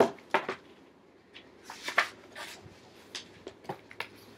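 Pages of a large picture book being turned and handled: a run of short paper rustles and flaps, loudest near the start and again about two seconds in.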